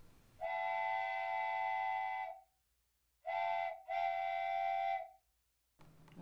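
A steady whistle-like tone of several pitches sounding together, sounded three times: one long blast, a short one, then another long one, cut off cleanly between them as an edited-in sound effect.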